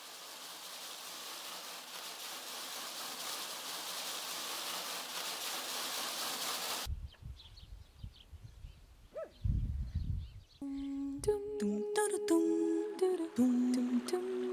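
A steady hiss that slowly grows louder and stops abruptly about seven seconds in, then a few low rumbles, and from about eleven seconds singing in a slow melody of long held notes.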